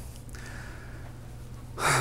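A man drawing a quick breath near the end, over quiet room tone with a steady low hum.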